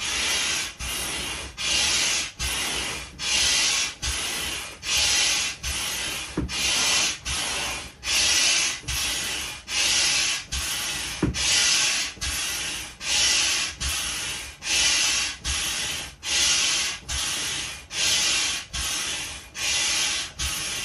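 Yellow hand air pump being worked steadily, each stroke a hiss of air rushing through the hose into a vinyl inflatable dinosaur sprinkler. The strokes come evenly, a little more than one a second.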